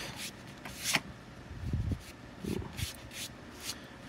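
Brief scratchy rustles of paper and drawing tools (pencil and paper tortillon) being handled and rubbed on paper, with a sharp tap about a second in.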